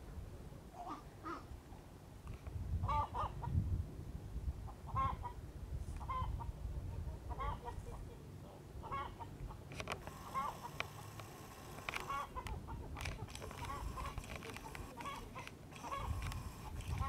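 Chickens clucking in short, repeated calls, more often in the second half, over a low, uneven rumble.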